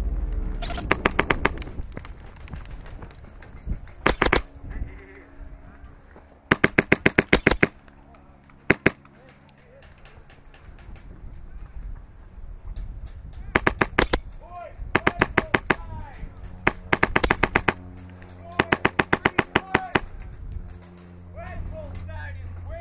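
Airsoft rifle firing in short rapid bursts: about eight strings of quick sharp cracks, the longest about a second, with a single shot near the middle and pauses of a second or more between.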